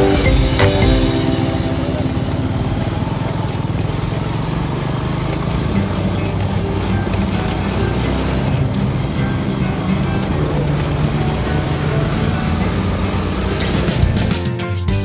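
Motorcycle riding on a dirt road: a steady engine and road-and-wind rumble. Background music fades out about a second in and comes back near the end.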